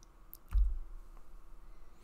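A few computer mouse clicks, the loudest a dull thump about half a second in, over a faint steady room hum.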